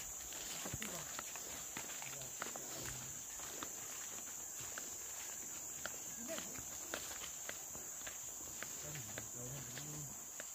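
A steady, unbroken high-pitched insect chorus, with scattered light footsteps on leaf litter and undergrowth as several people walk along a forest path.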